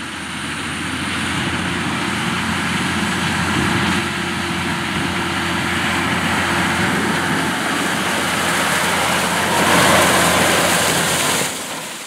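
John Deere 9510RT track tractor's diesel engine running steadily under load as it pulls a Great Plains Turbo Chopper vertical tillage tool through corn stubble. The sound swells and brightens about ten seconds in as the rig passes close, then fades.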